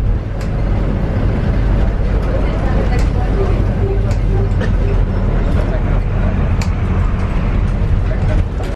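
A moving bus heard from inside the passenger cabin: its engine and the road make a steady, loud low rumble, with scattered clicks and rattles from the body.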